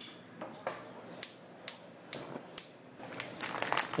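Gas range burner's spark igniter clicking about twice a second, six or so sharp ticks, until the burner lights near the end.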